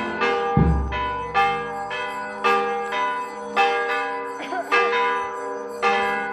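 Church bells ringing, struck about twice a second in an uneven sequence of pitches, each stroke ringing on into the next, with a deep low stroke about half a second in.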